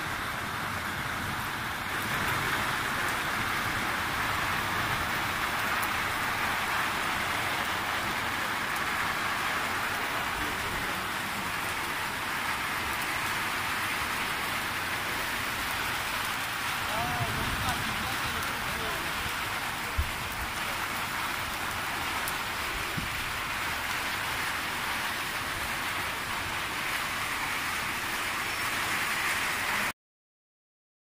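Steady rain, an even hiss, with a single low thump about twenty seconds in.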